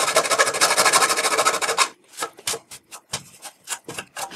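A hand file rasping against the edge of a rectangular cutout in a metal chassis panel, squaring off the corners, in quick back-and-forth strokes that stop about two seconds in. A few light scrapes and clicks follow.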